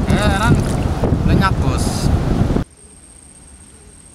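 Strong wind buffeting the microphone, with a voice heard briefly through it. The wind cuts off abruptly about two and a half seconds in, leaving only a low hiss.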